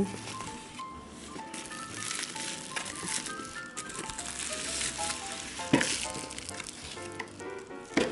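Plastic bubble wrap crinkling and rustling as it is handled and pulled out of a cardboard box, over light background music with a melody of short plinking notes. There is one sharp knock about six seconds in.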